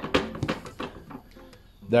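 Lid of a black plastic bin being pulled off, a quick run of plastic clicks and scrapes in the first half-second, then a few lighter knocks.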